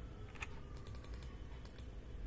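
Faint clicks of computer keyboard keys: one clearer tap about half a second in, then several lighter, quick taps.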